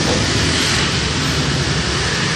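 Steady, loud rumbling noise with no distinct knocks, tones or voices.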